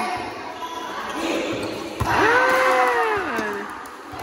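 A volleyball struck hard, a sharp smack about two seconds in, followed at once by a long, loud shout from a player that rises and falls in pitch, echoing in a large gym hall.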